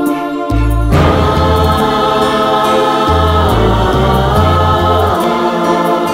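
A devotional hymn to Mary sung by a group of male voices with orchestral accompaniment and a moving bass line; the music swells into a fuller passage about a second in.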